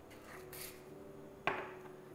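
Kitchen handling sounds while seasoning a pot: a faint shaking hiss about half a second in, then a single sharp click or knock about a second and a half in.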